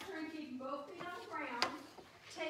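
A woman's voice speaking through most of the clip, with one sharp tap about one and a half seconds in.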